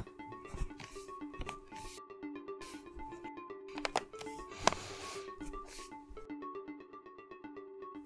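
Quiet background music with soft plucked-string notes. A few light clicks, the strongest a little before five seconds in, come from the laptop's plastic base cover clips snapping into place as it is pressed down around its edges.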